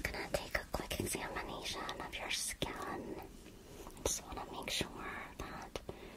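A person whispering close to the microphone, with many short, sharp clicks among the whispered words.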